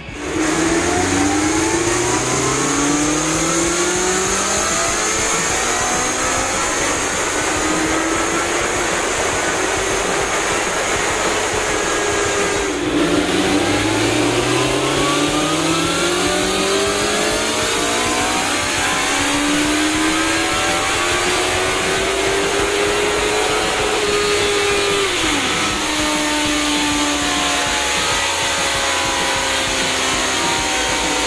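Honda CBR650R's inline-four engine revving hard on a roller dyno, its pitch climbing steadily through the rev range during a power run. The pitch drops sharply about 13 seconds in and climbs again, then falls away about 25 seconds in to a steadier, lower note.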